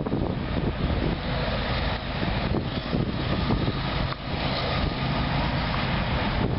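Diesel locomotive approaching, a low steady engine rumble, with wind buffeting the microphone.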